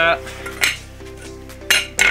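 Two sharp metallic clinks about a second apart: metal car parts being set down or knocked against each other.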